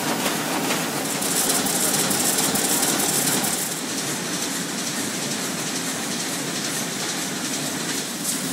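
Sheet-fed offset printing press running, a steady mechanical din with rapid clatter. A brighter, faster high clicking rides over it from about a second in until nearly four seconds.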